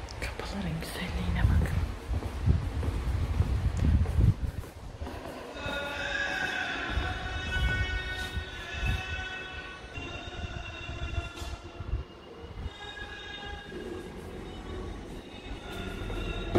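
Quran recitation: a voice chanting in long, melodic held notes, coming in about five seconds in and carrying on. Before it come low rumbling thumps and handling noise.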